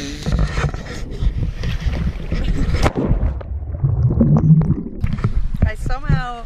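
Low rumbling water and wind noise on a handheld action camera's microphone held at the surface of the sea, with handling knocks. The sound goes muffled for about two seconds midway.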